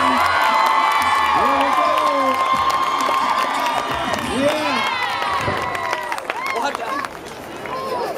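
Rodeo crowd cheering and shouting, many voices overlapping, with a few long held shouts; it eases off near the end.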